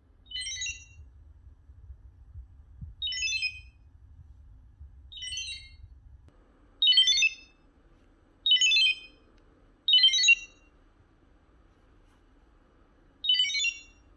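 A short high electronic chirp, heard seven times at uneven spacing, each time the scanner lamp is switched to another light mode from the app.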